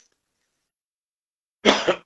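A man coughs once, loudly and sharply, about a second and a half in, after a silent pause.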